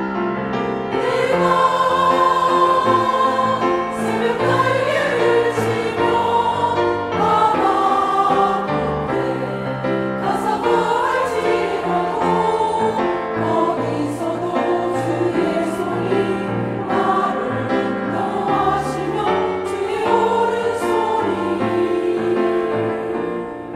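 Women's church choir singing a hymn in Korean, in parts, with instrumental accompaniment.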